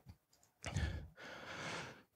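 A man breathing audibly into a close microphone between sentences: two faint breaths, the first slightly louder, with no voice in them.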